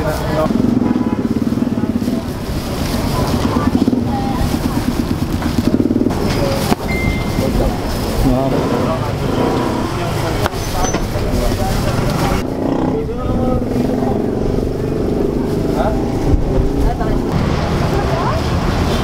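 People talking over a steady low rumble of street noise, with a fast, even engine-like pulsing in the first few seconds.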